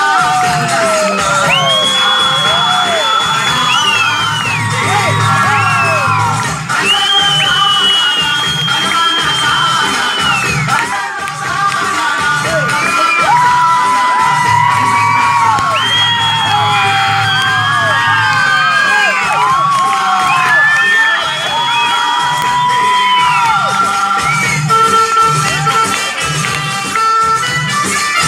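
Folk dance music with a steady drumbeat played loud through stage loudspeakers, while a crowd of children cheers and shouts over it with long high calls and whoops.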